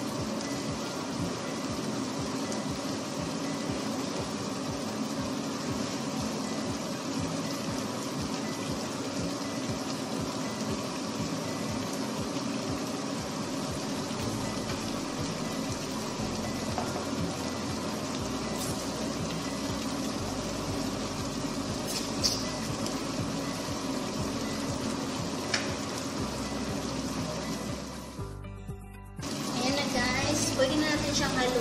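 Vegetable sauce simmering in a frying pan on a gas stove: a steady bubbling sizzle, with a few light taps of a stirring utensil against the pan in the second half. The sound drops away briefly near the end.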